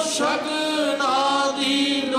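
Men singing Sikh kirtan, a gurbani hymn, in long drawn-out notes with sliding pitch, over a steady harmonium drone.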